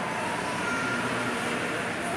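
Steady, even background noise of an echoing indoor pool hall, with faint distant voices.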